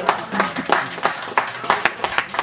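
Crowd clapping in a steady rhythm, about three sharp claps a second, with voices shouting underneath.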